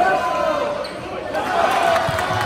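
Spectators' voices in a gymnasium around a free throw, with a basketball bouncing on the hardwood court.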